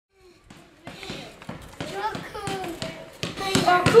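Children's voices talking, getting louder toward the end, mixed with a scatter of short, sharp taps.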